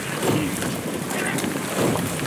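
Wind rushing over the microphone as a rowing eight passes close by, its oar blades splashing through the water, with two louder surges about a second and a half apart.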